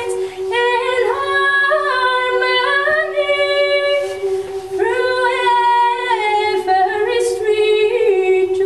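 Choir singing, the voices moving between notes above a steady held low note, with a short breath about four and a half seconds in.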